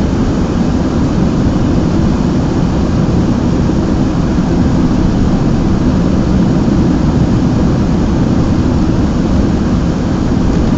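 Steady road and engine noise inside a moving car's cabin: a dense, even rumble, heaviest at the low end.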